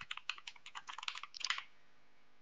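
Typing on a computer keyboard: a quick run of keystrokes that stops about a second and a half in.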